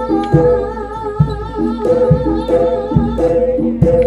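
Live jaranan gamelan music: repeating metallophone notes and a deep drum stroke about once a second, under a wavering sung or reed melody line.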